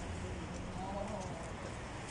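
Street traffic with a van's engine running as it rolls slowly past close by, a steady low rumble, with faint voices of passers-by in the middle.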